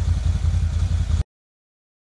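Low, steady rumble of an idling engine, cut off abruptly a little over a second in.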